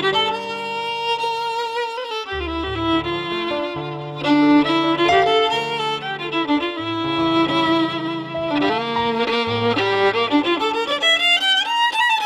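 Violin improvising an istikhbar, the unmetered free-rhythm prelude of Algerian Andalusian music, in the sahli mode, with a winding, ornamented melody full of slides. Underneath run low sustained notes, below the violin's range, that change every second or two.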